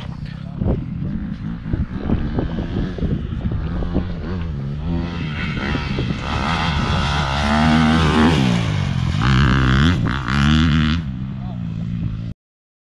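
Dirt-bike engine revving, its pitch rising and falling with the throttle, getting louder as the bike approaches and loudest near the end.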